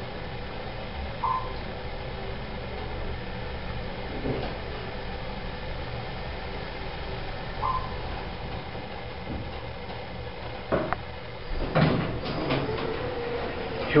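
A 1986 Dover hydraulic elevator car riding down with a steady low hum, and a short electronic beep sounds twice, about a second in and again near eight seconds. Near the end the car stops with a few knocks and the doors slide open.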